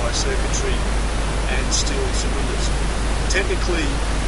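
Steady hiss with a faint voice heard in snatches beneath it.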